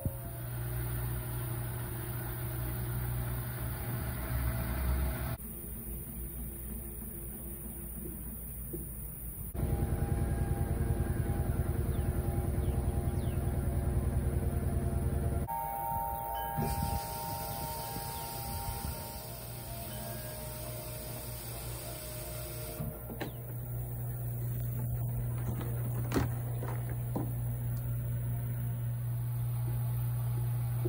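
GE 24-inch front-load washer/condenser dryer combo running its cycle with clothes turning in the drum: a steady low motor hum that shifts abruptly several times. It is loudest for about six seconds in the middle with a fast rhythmic churn, and a brief whine follows.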